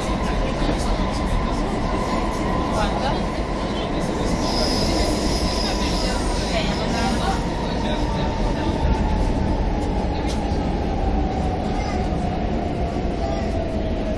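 CAF Boa metro train running through a tunnel, heard from inside the car: a steady rumble of wheels on rail with a motor whine that falls in pitch over the last few seconds as the train slows for a station. A brief high squeal comes about five seconds in.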